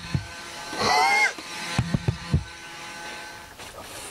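Handling knocks and bumps as a camcorder is moved about at close range in a small boat cabin: a few sharp knocks, with a brief squeaky pitched sound about a second in.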